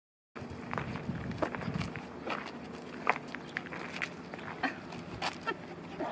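Footsteps and scuffs on an asphalt road as a person walks slowly with a small dog on a leash, with irregular sharp ticks about every half second to a second.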